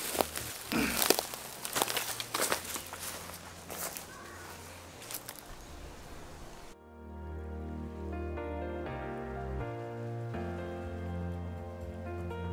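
Footsteps crunching and crackling through dry leaf litter and twigs, irregular and light. About two-thirds of the way in the sound cuts off and music with sustained notes begins.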